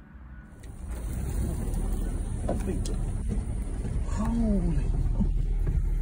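Steady low rumble of a vehicle driving off-road, heard from inside the cab, starting about a second in, with a voice exclaiming over it.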